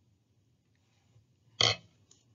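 Quiet pause, then about one and a half seconds in a single short, sudden throat noise from the narrator, a burp-like sound.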